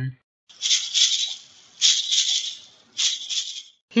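Three rattling shakes of a shaker-like sound effect, each about a second long, high and hissy with no low end.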